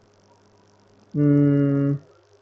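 Near silence, then about a second in a man's voice holds a flat, drawn-out hesitation sound, "uhhh", for just under a second.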